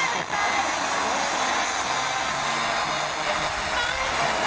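Steady FM hiss from a Sangean ATS-909 portable receiver tuned to a weak, distant FM station on 103.9 MHz. Faint tones of the programme audio can be heard buried in the noise, as the signal briefly drops toward the noise floor between spoken items.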